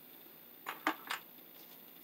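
Three short, light clicks close together about a second in, from hands handling a tool and an old cloth-covered electrical cable.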